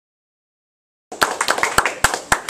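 Silence, then a few people clapping by hand, starting abruptly about a second in with distinct separate claps.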